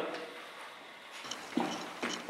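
Quiet room tone in a hard-floored room, with a few faint clicks about a second in and a soft voice starting near the end.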